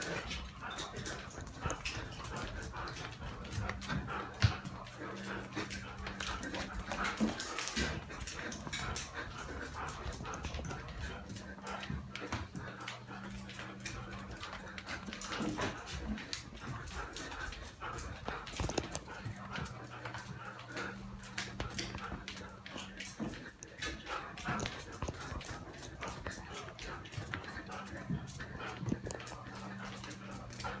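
A dog running in circles through a house, chased by a person: quick footfalls and sharp clicks on hard floors, with the dog's own vocal sounds among them.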